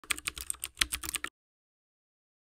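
Computer keyboard typing sound effect: about a dozen quick keystrokes over just over a second, stopping abruptly.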